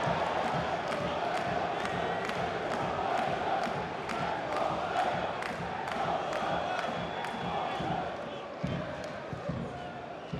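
Football stadium crowd chanting and singing, with rhythmic clapping about three times a second; the chant dies away about eight seconds in.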